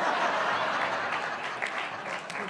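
Studio audience applauding, loudest at the start and easing off toward the end.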